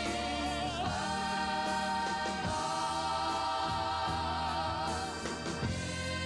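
Live gospel music: a woman's voice holds long notes with vibrato over a choir and instrumental accompaniment.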